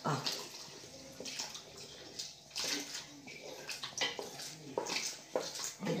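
Milk pouring in a stream from a jug into a pot of part-cooked rice, with a spoon stirring through it and knocking against the pot a few times.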